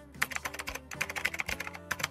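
Computer keyboard typing sound effect: a fast, uneven run of key clicks, about eight or more a second, that goes with an on-screen caption typing itself out.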